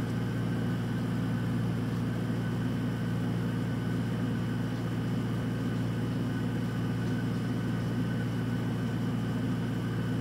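A steady low hum with a faint high whine above it, unchanging throughout, like a motor or fan running.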